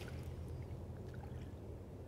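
Faint water movement in shallow pond water, stirred by a hand and a small floating stick raft, over a low steady background rumble.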